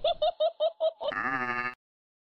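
A bleating cry: a quick run of about six pulses in the first second, then one longer wavering note that cuts off suddenly before the end.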